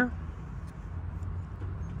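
Steady low outdoor background rumble, with a few faint light ticks.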